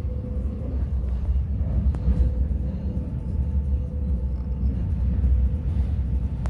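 Interior running noise of a Stadler ETR 350 electric train: a steady low rumble with a faint steady whine above it, and a couple of small clicks.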